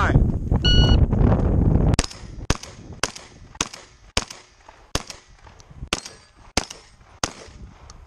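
Shot timer beep just under a second in, over low rumbling noise on the microphone. From about two seconds in comes a rapid string of shotgun shots, about nine, roughly half a second apart.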